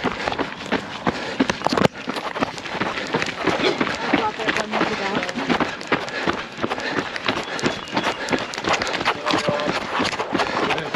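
A runner's footsteps on a wet gravel and dirt trail: quick, steady strides, with voices mixed in.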